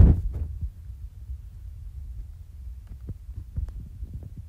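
Handling noise from a tablet being moved about: a low rumble with irregular soft thumps and a few faint clicks near the end.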